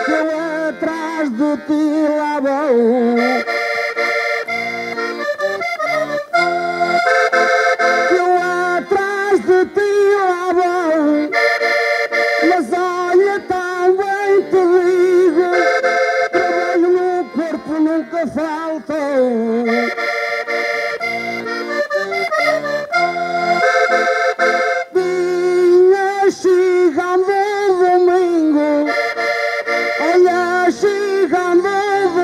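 Accordion playing a traditional Portuguese desgarrada tune on its own: a melody over steady bass-and-chord accompaniment, in phrases that repeat about every four seconds. This is the instrumental break between the sung verses of the singing contest.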